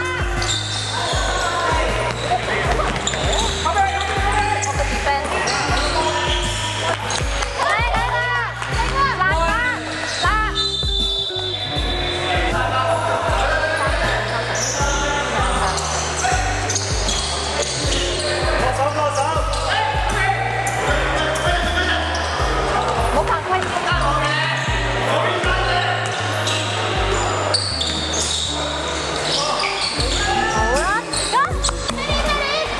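Basketball game on a hardwood gym court: the ball bouncing, sneakers squeaking and players calling out, with music playing underneath.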